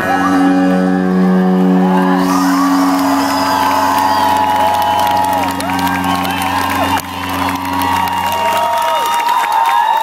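Final chord of a live rock band's song ringing out and held, then dying away about nine seconds in, while the crowd cheers, shouts and whoops over it.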